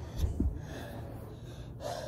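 A girl breathing hard after exertion, with a soft low thump about a third of a second in and a short gasping breath near the end.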